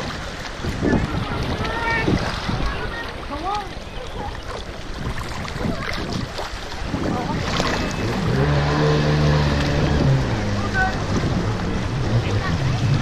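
Water sloshing and splashing around an action camera held at the surface, with distant voices. From about seven seconds in, a jet ski engine runs with a steady low hum for about three seconds.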